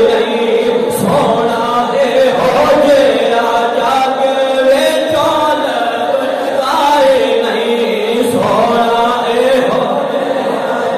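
A man's voice chanting in a sung, melodic delivery into a microphone, with long, wavering held notes in phrases a few seconds long and no instruments.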